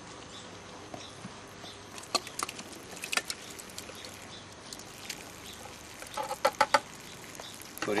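A plastic scoop working a wet mix of yard clippings, sawdust and shredded paper out of a bucket and tipping it into a PVC briquette mould tube: scattered short knocks and scrapes, with a quick run of sharper taps near the end.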